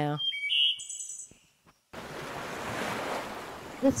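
A few high chirps, then a brief hush, then a steady rush of ocean water like surf from about halfway through.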